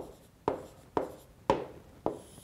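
Stylus tapping and scratching on a tablet screen while handwriting a word, with sharp ticks about twice a second.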